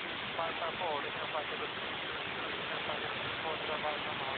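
Steady static hiss on an air traffic control radio frequency, with faint, unintelligible speech from a weak transmission showing through it.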